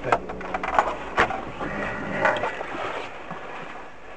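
Low, steady hum of a stationary car's idling engine heard inside the cabin through a dashcam, with a sharp click about a second in and a few fainter ticks.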